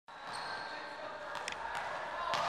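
Basketball training in an echoing indoor hall: a few sharp knocks of balls bouncing on the court about a second and a half in, over a steady background of distant voices.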